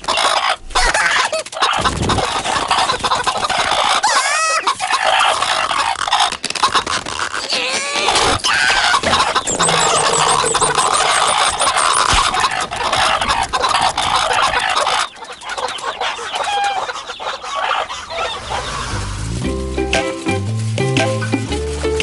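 Cartoon soundtrack: busy sound effects with chicken-like clucking and squawks over music, giving way near the end to plain music with a steady bass line.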